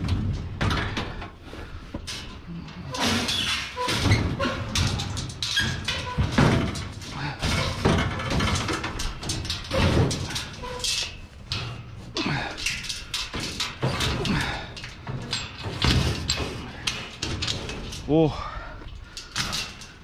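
Irregular knocks, scrapes and thuds as a heavy salvaged item is shoved and wrestled into a vehicle. A man's straining, voice-like grunts are mixed in, with one near the end.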